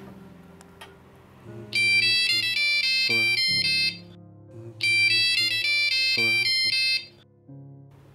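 Smartphone ringtone for an incoming call: a quick, bright, high-pitched melody played twice, each time for about a second and a half, starting about two seconds in and again about five seconds in, over a low background music score.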